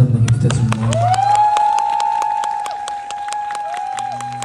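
A live band ends a song with a loud final chord under the last sung words. The audience then applauds and cheers, with rapid clapping, while one long high note is held over it.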